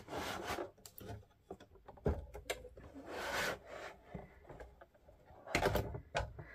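Tim Holtz rotary paper trimmer being slid out of its cardboard box: several short bouts of scraping and rubbing against the cardboard, with a few light knocks between them.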